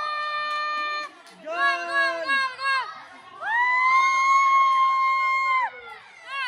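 Children shrieking with excitement: one long high scream that breaks off about a second in, a few short wavering yells, then another long high scream from about halfway through that drops away near the end.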